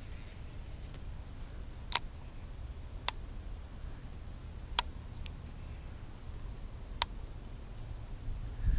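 Four sharp clicks a second or two apart from a baitcasting rod and reel being handled while the line is rigged, over a faint low rumble.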